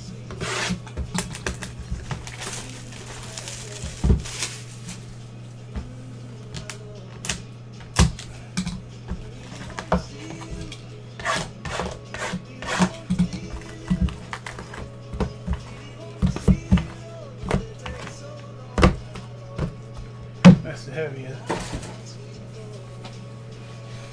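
Shrink-wrapped cardboard trading card boxes being handled and set down on a table: irregular knocks, taps and rubbing, some sharp, over a steady low hum.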